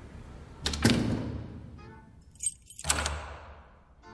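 Sound effect of heavy doors being shut and locked: a heavy door closing with a long echoing boom about a second in, a brief jingle of keys, then a second echoing boom near three seconds.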